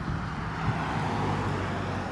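A car driving past on a wet road: tyres hissing on the wet asphalt over a low engine hum, swelling about a second in as it goes by.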